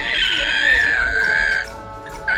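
A high-pitched squealing cry for a baby dinosaur hatching from its egg, held for about a second and a half and sagging slightly in pitch before it stops.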